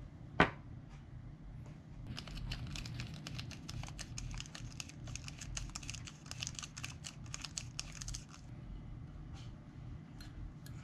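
A single sharp metallic click about half a second in, then a screwdriver driving a small machine screw into an SO-239 connector flange on a die-cast aluminium box: a dense run of small scratchy clicks and metal-on-metal scraping that stops near the end.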